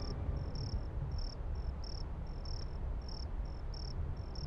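Crickets chirping as night ambience: short high chirps, about two or three a second, alternating shorter and longer, over a low steady hum.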